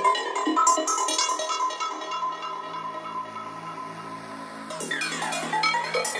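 Psytrance electronic music: rapid sequenced synthesizer notes that thin out midway to a low held drone, then a busier section of sharp synth hits comes in about five seconds in.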